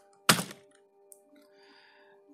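A single hard keystroke on a computer keyboard about a third of a second in, closing a run of typing, followed by faint steady tones.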